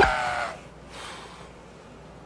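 A man imitating a rooster's crow: one held, pitched call that fades out about half a second in.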